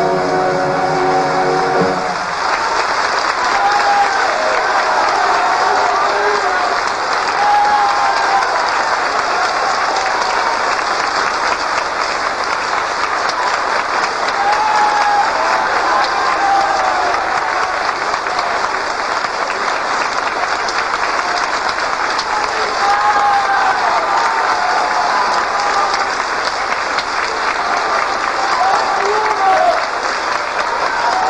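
A theatre audience applauding steadily and at length after a live song, with voices calling out above the clapping now and then. The singer's final note and the orchestra's closing chord stop about two seconds in.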